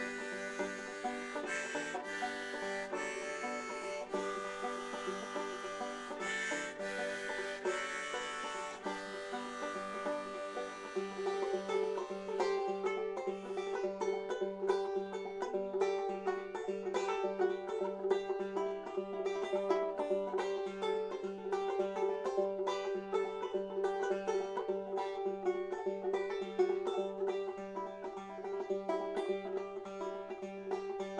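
Banjo played instrumentally, notes picked in a steady run; about twelve seconds in, the picking turns faster and busier over a repeated steady note.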